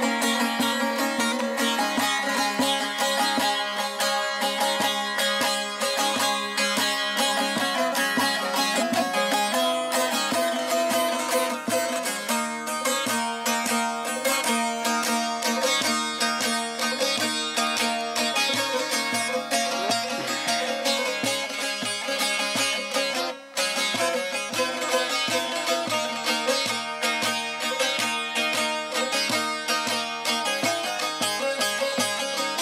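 Bağlama (Turkish long-necked saz lute) played solo in a fast instrumental passage of dense, rapid plucked strokes, with a brief break about three-quarters of the way through.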